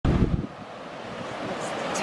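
Whitewater river rushing in flood, a steady hiss that slowly grows louder. Wind buffets the microphone heavily for the first half second.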